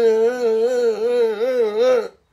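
A man's voice holding one long sung note, its pitch wobbling up and down in a steady vibrato.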